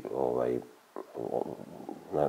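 A man's voice speaking, halting mid-sentence: a short stretch of speech, a pause just under a second in, then quieter, hesitant voicing.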